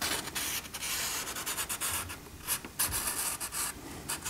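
Paintbrush scrubbing across a sheet of paper in a run of short strokes with brief pauses between them.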